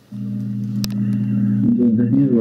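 A steady low hum made of a few held tones comes on abruptly just after the start and carries on, with one sharp click a little before midway.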